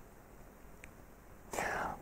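Low room tone for about a second and a half, then a short, breathy hiss: the preacher drawing breath close to his microphone just before he speaks again.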